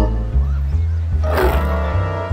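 A cartoon tiger roar sound effect about halfway through, over background music with a heavy bass line.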